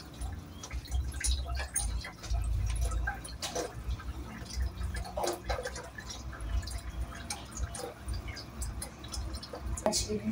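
Water being poured into a cat's water bowl, with scattered small drips and clicks over a low, uneven rumble.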